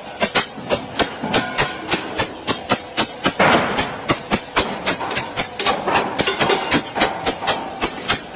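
Several sledgehammers striking the same spot one after another in a fast, even rotation, about three or four blows a second, each blow a sharp ringing clank.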